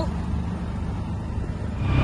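Low rumble of an auto-rickshaw ride heard from inside the open passenger cabin. Near the end it gives way abruptly to a louder, steadier hum.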